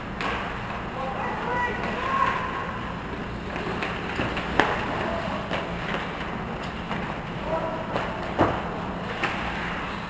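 Ice hockey play in a rink: skates scraping the ice under a steady low hum, short shouted calls from players, and two sharp knocks of stick and puck, about four and a half seconds in and again past eight seconds.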